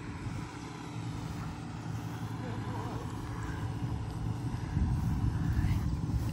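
A steady low motor drone that grows louder toward the end.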